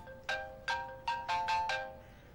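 Mobile phone ringtone playing a quick melody of about six short notes, each fading fast. It stops just before the end.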